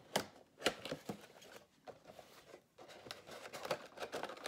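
Cardboard Funko Pop box being opened by hand: the packaging clicks, scrapes and rustles, with a few sharp clicks in the first second and more near the end.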